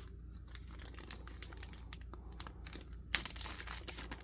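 Small clear plastic zip-top bag crinkling as it is handled and pulled open: a run of faint crackles that becomes louder and denser about three seconds in.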